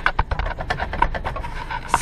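An irregular run of small, sharp clicks with some rubbing, from hands and a tool handling the pipe and wiring around an RV black tank valve.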